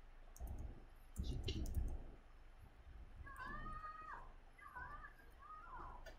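Computer keyboard being typed on: a few light clicks in the first two seconds. Faint, high, gliding calls sound in the background through the middle of the stretch.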